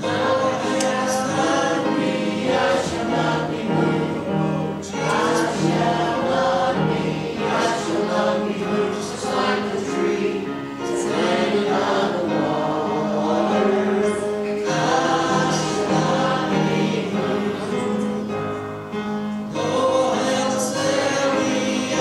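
A church congregation singing a gospel hymn together, in sustained phrases that go on without a break.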